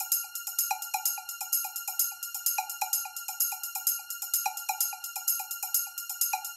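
Electronic dance track in a breakdown with the kick and bass gone, leaving a looping cowbell-like percussion pattern of about four to five hits a second. Fast hi-hat ticks and a steady high tone run over it.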